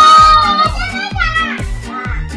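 Upbeat background music with a steady bass beat, under a child's long, high-pitched shout that trails off about a second in, followed by brief children's voices.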